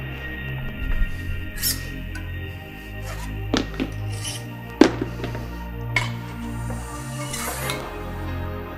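Bass-heavy background music with a steady beat, over a few sharp clanks and knocks of a weight plate being loaded onto a barbell sleeve, the loudest about five seconds in.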